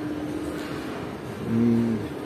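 Shopping-mall room noise: a steady even hiss with a low steady hum that fades out about half a second in. Near the end a man holds a short low hesitation sound before speaking again.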